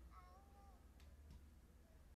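Near silence as the song fades out: a faint wavering sung tail in the first second, then a faint click about a second in.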